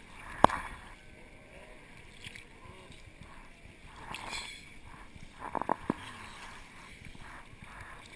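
Sea water sloshing and lapping around a camera at the surface, with one sharp knock about half a second in and a few quick clicks around five and a half seconds.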